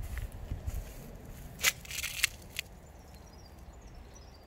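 Footsteps on dry grass and dirt, with two sharp crackles a little before halfway, then quieter from about two-thirds through.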